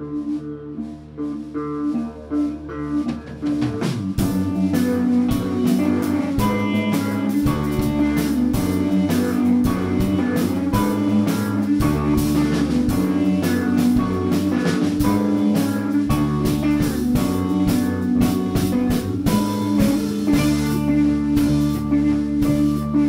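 Live rock band playing an instrumental intro on electric guitars and drums: a quieter opening of held guitar notes, then the full band with drums comes in about four seconds in, louder.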